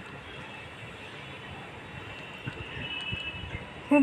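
Shrimp, onions and green chillies in mustard oil sizzling steadily in a nonstick kadai, with a few light scrapes and taps of a silicone spatula stirring them.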